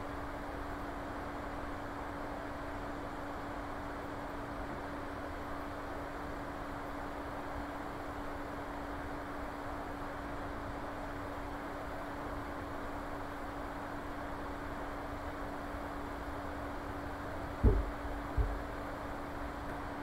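Steady background hiss with a constant low electrical hum, the room noise of an open microphone. Two short low thumps come near the end, about a second apart, the first louder.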